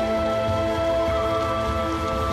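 Vegetables sizzling in a hot pan, a steady frying hiss, under background music with long held notes.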